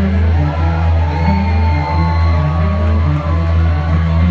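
Loud live rock music through a club PA, with a heavy pulsing bass and long held tones above it, and the crowd whooping and cheering over it.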